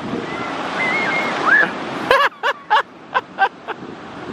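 Ocean surf breaking with wind buffeting the microphone. About halfway through, the surf drops away abruptly and a high-pitched laugh follows, about six short 'ha' sounds in quick succession.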